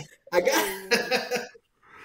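Men talking and laughing: a short stretch of a man's speech mixed with laughter, then a breathy pause near the end.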